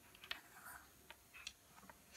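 Faint, scattered light clicks as a small dog tugs at a plush toy on a tile floor.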